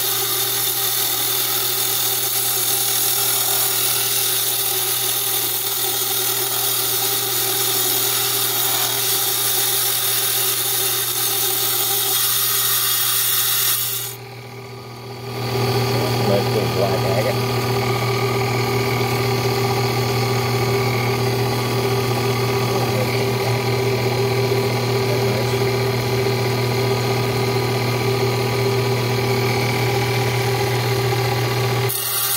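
Small water-cooled lapidary trim saw running steadily with a hum and a high grinding hiss as an agate is pushed through the blade. About halfway through, the sound dips for a moment, then the saw runs on with a stronger hum and less hiss once the stone has been cut in two.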